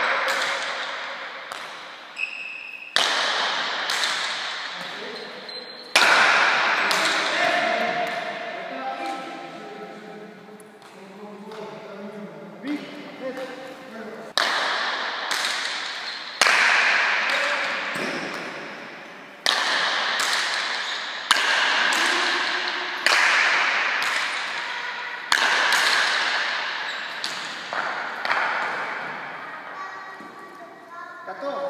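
Rallies of paleta cuir (Basque pelota with a leather ball and wooden bats): sharp cracks of the ball off the paletas and the court walls, each ringing out in the big hall's echo. From about 14 s they come quickly, one every second or less. Between about 7 and 14 s, voices talk in the hall between the shots.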